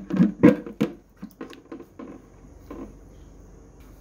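Hollow plastic knocks and rubbing as a ceramic filter candle is pushed through the hole in the bottom of a white plastic bucket, loudest in the first second, followed by a few light clicks.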